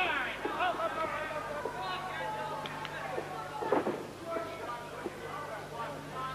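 Wrestling crowd in a hall, many voices shouting and calling out at once, with a sudden louder moment about four seconds in, over a steady low hum.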